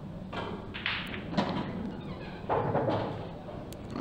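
An English pool shot: the cue tip strikes the cue ball, then a few separate knocks as the balls collide with each other and the cushions over the first three seconds.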